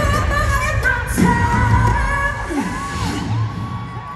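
Live pop song played over an arena PA, with a heavy bass beat and sung vocal lines, recorded from among the crowd. Near the end the beat drops out, leaving a held, bending vocal line.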